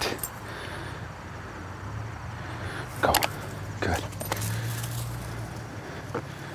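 A steady low hum over open-air background noise, broken by a few short knocks about three and four seconds in.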